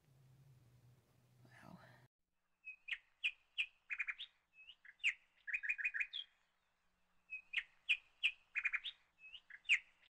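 Songbird singing: short chirps and quick runs of notes in two similar phrases, beginning after a low hum that cuts off abruptly about two seconds in.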